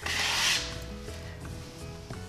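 A stainless steel tape knife scraping across a hardwood floor as it spreads a glue-based filler compound into nail holes and gaps between the boards. One strong scrape in the first half second, then fainter rubbing.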